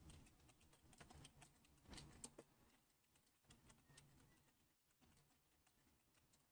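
Faint typing on a computer keyboard: a quick run of key clicks that thins out in the second half.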